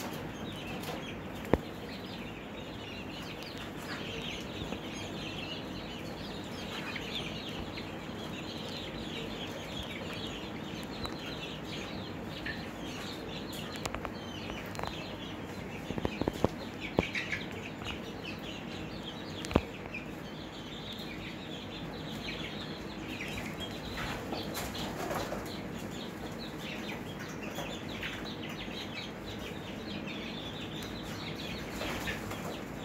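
A brooder full of five-week-old chicks peeping and chirping without pause, with bursts of wing flapping. A few sharp taps stand out, one early on, a cluster just past the middle and one soon after. A steady low hum runs underneath.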